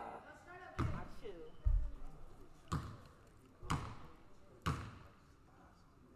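A basketball bounced on a hardwood gym floor about once a second as a player dribbles at the free-throw line before her shot. Each bounce rings briefly in the hall, and there is a duller thump near two seconds in.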